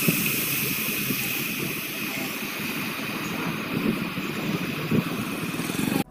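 Vehicles running on a wet, flooded road, with a steady hiss and a couple of faint knocks.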